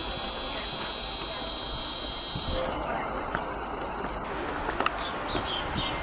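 Outdoor ambience with a steady high-pitched whine through the first half, stopping about halfway through, from a camcorder's zoom motor running as the lens zooms in. A faint murmur of distant voices lies underneath.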